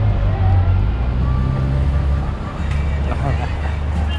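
Steady low rumble of vehicle noise, with people talking faintly over it.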